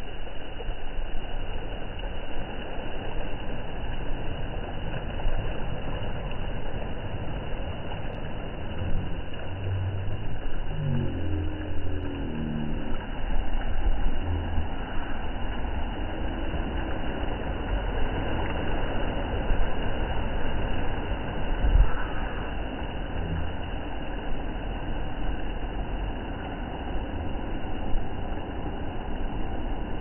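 Small waves washing up on a sandy shore under a steady rumble of wind on the microphone, with a few low thumps.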